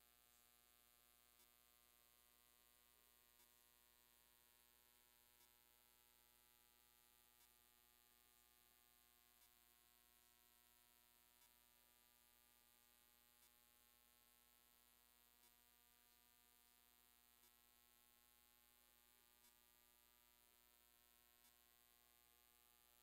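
Near silence: a faint steady electrical hum, with a faint tick about every two seconds.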